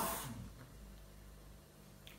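A man's voice trailing off in the first half second, then a pause with only faint room tone and a low steady hum.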